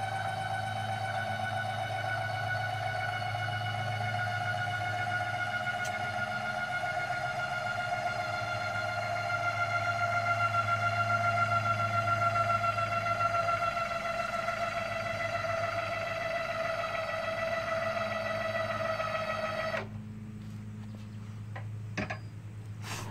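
Electric power tongue jack motor running as it raises the trailer tongue, a steady whine over a low hum whose pitch sags slightly as it takes the load. It cuts off suddenly about 20 seconds in.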